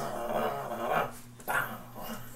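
Drawn-out, wavering dog-like growl, ending about a second in, followed by a short bark-like sound about one and a half seconds in, over a steady low hum.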